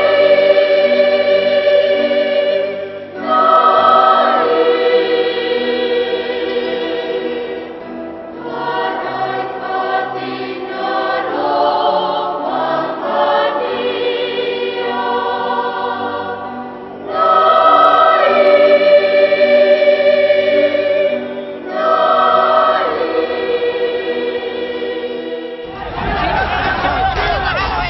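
A choir singing slow, held chords in phrases of several seconds, each swelling and then breaking off before the next begins.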